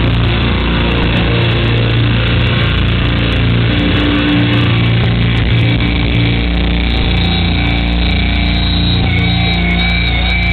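Metalcore band playing live: heavily distorted guitars and bass, loud and muddy through an overloaded camcorder microphone.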